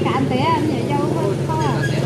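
Voices talking, with high pitch contours, over a steady low hum.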